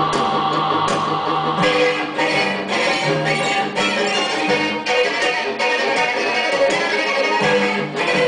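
Live instrumental passage for piano and strings, with no voice. Sustained string tones lie beneath, and a steady pulse of notes, about two a second, enters about one and a half seconds in.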